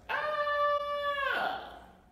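A young man's long, high-pitched wordless vocal sound, held on one steady pitch for over a second and then trailing off.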